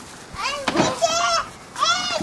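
A young child's high-pitched squeals without words: one that starts about half a second in and lasts about a second, then another that begins near the end.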